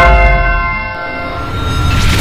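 A bright bell-like chime, struck once and ringing away over about two seconds, over a deep, throbbing bass music bed. A hiss swells in near the end.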